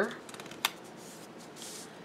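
Sticker sheets being handled and a sticker peeled off: soft paper rustling and scraping, with one sharp tick about two-thirds of a second in.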